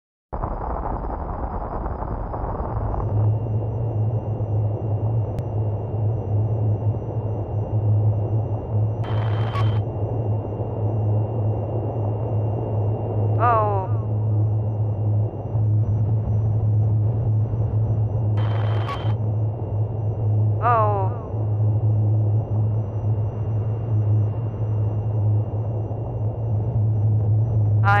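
A steady low rumbling drone with a hiss over it. It is broken twice by brief bursts of hiss and twice by short runs of quickly falling chirps.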